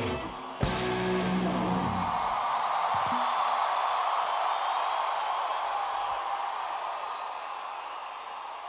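A rock band's final crash of drums and guitars ends a song about half a second in, the chord ringing out for a couple of seconds, then a large concert crowd cheering and applauding, slowly fading.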